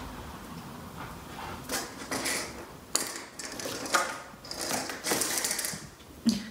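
A cat playing at a cardboard scratcher toy with a plastic ball track: irregular scraping and rustling, with sharp clicks about three and four seconds in and a longer rasping scrape near the end.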